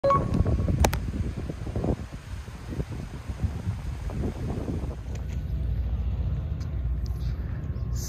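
Wind rumbling on the microphone, with a couple of sharp clicks about a second in.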